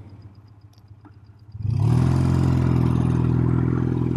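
Motorcycle engine and wind rush heard from the rider's helmet while riding. Quiet at first, then about one and a half seconds in a steady engine note with loud wind noise comes in suddenly and holds.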